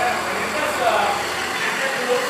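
Ford 6.0 Power Stroke V8 turbodiesel idling steadily and quietly, heard near the tailpipe; a freshly installed engine running smoothly.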